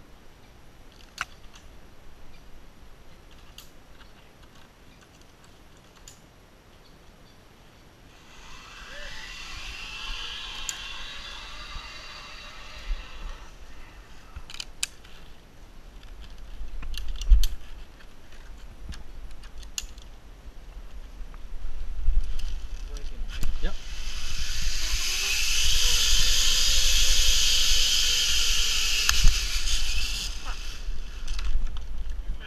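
Zip-line trolley pulleys running along a steel cable, a high whirring whine. A first whir rises and fades from about eight seconds in. A louder one builds from about twenty-two seconds on, with wind rumbling on the microphone as the rider travels down the line. Light clicks of the clip-in hardware come over the first few seconds.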